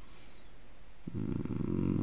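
Faint low hum, then about a second in a man's drawn-out hesitation sound, a low steady "mmm", growing louder.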